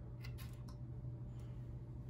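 A few faint clicks of a small plastic model engine being handled and turned over in the hands, over a steady low hum.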